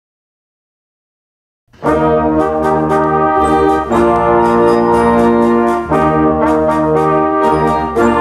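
A beginning concert band starts a march about two seconds in after silence: brass and woodwinds playing full sustained chords that change every second or two, with drum strokes, mixed together from separately recorded home performances.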